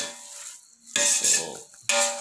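A spoon stirring and scraping thick gajar ka halwa (grated carrots roasted with khoya and ghee) around a pot, with a little sizzling as it cooks on low heat. It begins with a sharp scrape, and a louder stretch of scraping comes about a second in.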